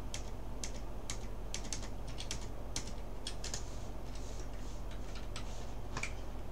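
Typing on a computer keyboard: irregular, sharp key clicks, a few a second, over a steady low hum.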